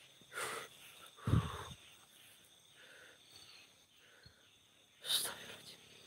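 Crickets chirring faintly and steadily, broken by three short noises close to the microphone, the one just over a second in the loudest, with a low bump.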